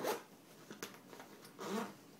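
Zipper on the front pocket of a fabric range bag being pulled open in a few short pulls.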